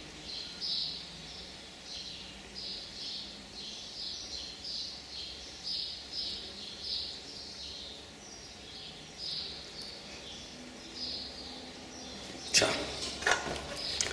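A bird chirping over and over, short high chirps about twice a second, dying away a couple of seconds before the end.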